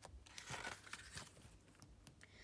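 Page of a small paperback storybook being turned by hand, a faint rustle and crinkle of paper, loudest about half a second in.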